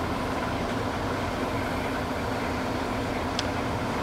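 Clausing Metosa gap-bed engine lathe running with no cut, its spindle and empty chuck turning at a steady speed: an even whir with a low hum underneath.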